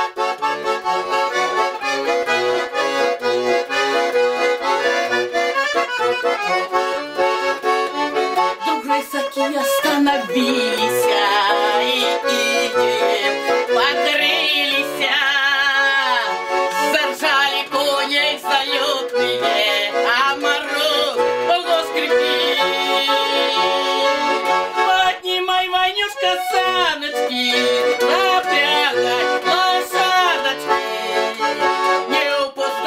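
Small red accordion playing a lively folk tune, with a steady bass-and-chord accompaniment. A woman's voice sings along over it, loudest in the middle and toward the end.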